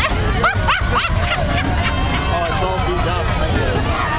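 Crowd of parade spectators chattering and calling out, with a few sharp, high-pitched shouts or whoops about half a second to a second in.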